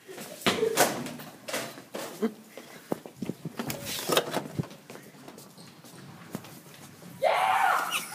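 Hurried footsteps with a clatter of sharp knocks and bangs as people rush out through a classroom door, then a loud shout in the last second.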